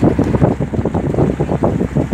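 Wind buffeting the microphone of a phone held at the window of a moving vehicle, a loud, uneven rumble over the vehicle's road noise.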